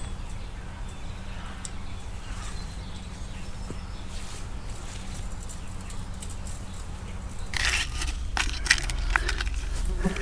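A low steady rumble, then from about three-quarters through, rustling and crackling with sharp clicks as fence wire is handled among trampled weeds.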